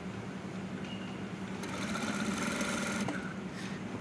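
Single-needle lockstitch ('singer') sewing machine running, stitching neck tape onto a jersey neckline, with a fast even rattle of stitches over a low motor hum. The stitching grows louder from about one and a half seconds in until about three seconds.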